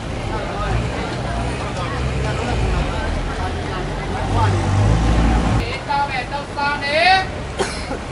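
Busy street ambience: a steady low rumble of passing traffic with people's voices over it, and a louder, high-pitched voice calling out a few times near the end.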